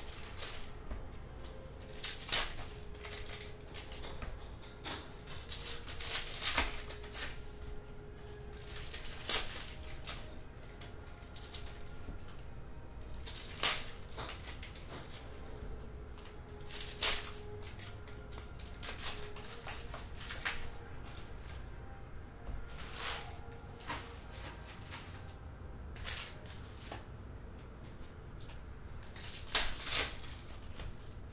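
Foil trading-card packs and cards being handled on a table, with scattered crinkles, rustles and taps and a few louder crackles.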